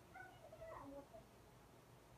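A few faint, short, high-pitched animal calls in the first second or so, bending in pitch, over near silence.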